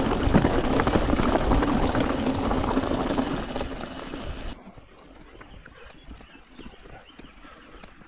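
Mountain bike rolling fast over a loose rocky trail: dense crunching of tyres on rock and rattling of the bike. About four and a half seconds in, the sound cuts off abruptly and gives way to much quieter rolling on a smooth dirt trail with a few light ticks.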